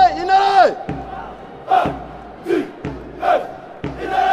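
Special forces soldiers' marching chant: a long held shout that drops away in pitch about half a second in, then three short shouted calls at an even pace, and another long held shout starting at the end.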